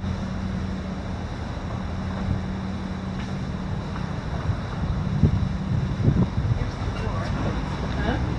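A steady low mechanical hum with rumbling wind noise on the microphone, which grows louder and more uneven about halfway through.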